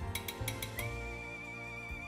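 A metal spoon clinking a few times against ceramic bowls as grated cheese is spooned into beaten egg, over soft background music holding a chord.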